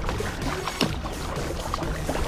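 Water splashing and gurgling against a kayak's hull as it moves through choppy water, in irregular small splashes over a steady low rumble.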